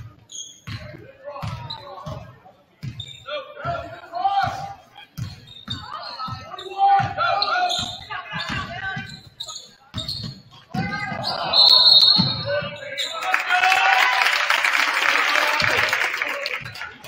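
A basketball being dribbled on a hardwood gym floor, bouncing about twice a second, under the voices of players and spectators. About twelve seconds in, a referee's whistle blows briefly to stop play, and loud crowd noise follows.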